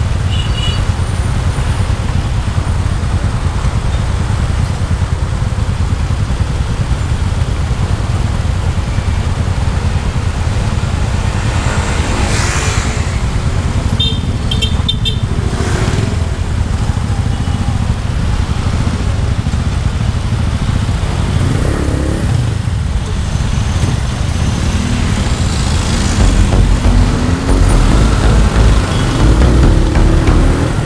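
Motorcycle engines idling in stopped city traffic, a steady low rumble, with a few short horn toots about halfway through. Over the last few seconds the rumble grows louder as traffic pulls away from the light.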